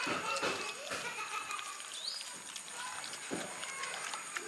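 Dogs eating cooked rice from a metal tray: a few short wet smacks and chews, with faint pitched calls in the background.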